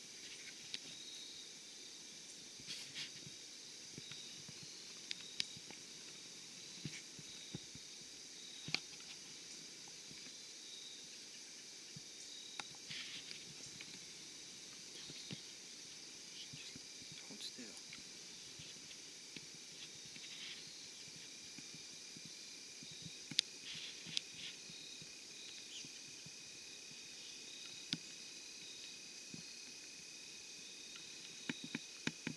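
Faint, steady insect chorus of several high-pitched tones, one of them pulsing, with another tone joining about twenty seconds in. Scattered soft clicks and taps run through it.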